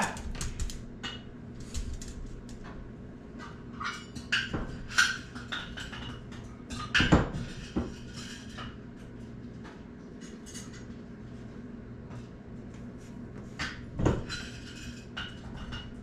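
Kitchen clatter of dishes and utensils knocking and clinking as dog food is prepared, with louder knocks about seven and fourteen seconds in, over a faint steady hum.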